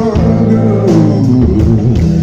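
Live electric blues band playing loud, with electric guitars, bass guitar and drums. Through the middle a melody line falls steadily in pitch.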